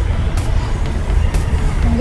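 A steady, loud low rumble of outdoor background noise, with faint clicks about once a second.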